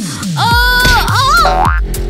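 Cartoon-style comedy sound effects over upbeat background music: a falling boing at the start, a held pitched tone, then a quick rising slide near the end.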